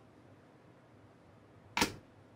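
Near silence, then near the end one short, sharp slap as both hands are turned over and brought down flat onto a wooden tabletop.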